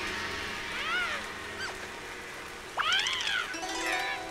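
Two short squeaky cartoon-character calls that rise and fall in pitch, a small one about a second in and a louder one near three seconds, over steady rain, with a plucked zither string ringing near the end.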